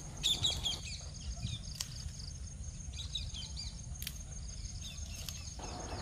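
Faint high bird chirps in short bursts, a few near the start and again around the middle, over a low outdoor background hum, with a few sharp clicks.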